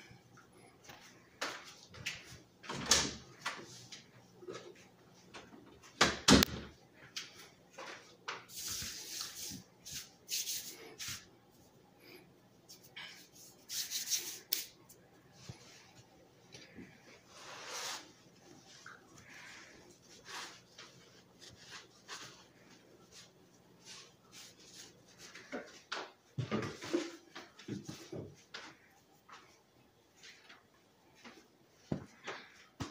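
Kitchen handling sounds: scattered knocks, clatters and brief rustles of items being moved and put away on a tiled counter, over a faint steady low hum. Near the end a cloth rubs and wipes the counter.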